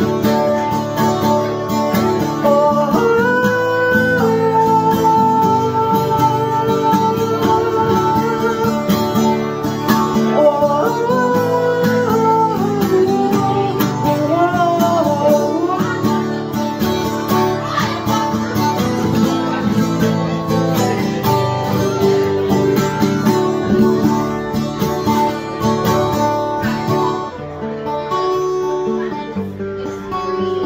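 A solo acoustic guitar strummed live through an instrumental passage of a rock song, with melodic lines rising and falling over the chords.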